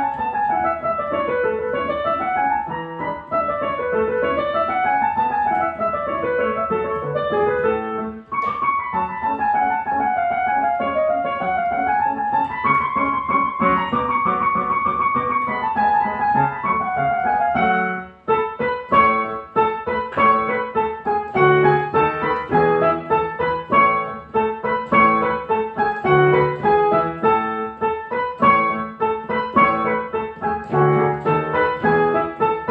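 Solo piano playing: fast rising-and-falling runs for the first several seconds, a flowing melodic passage after a brief break, then, from about eighteen seconds in, a more detached, accented passage of short notes and chords.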